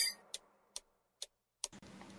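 A short burst of hiss right at the start, then near silence broken by four faint, sharp clicks evenly spaced about two a second.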